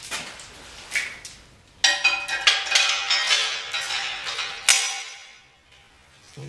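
Metal chain rattling and clinking as it is lowered into a hanging bucket. A few lone clinks come first, then from about two seconds in a quick run of ringing metallic clinks, ending with one sharp clink near the five-second mark.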